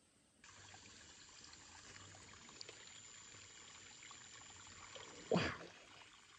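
Outdoor ambience in forest undergrowth: a steady hiss with a thin, high, steady tone that starts about half a second in, and one brief loud sound about five seconds in.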